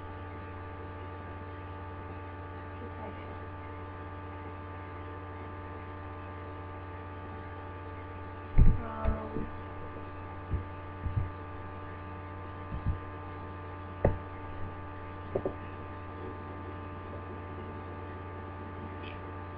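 Steady electrical hum made of several held tones, carried through the whole stretch. Between about halfway and three quarters of the way through come a handful of short, dull low knocks; the first is the loudest.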